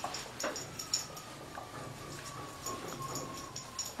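A hand-held duster wiping a whiteboard in quick repeated strokes, each stroke a short rubbing squeak. Under the strokes runs a faint thin whine that slowly falls in pitch.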